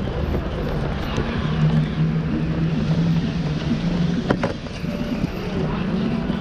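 A vehicle engine running with a steady low hum over city street noise, with one sharp click a little past four seconds in.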